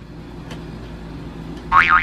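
A steady low rumble, then a child exclaims "Whoa!" near the end.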